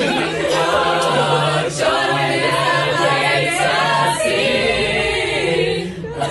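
A teenage school choir singing a cappella, many voices together in sustained harmony.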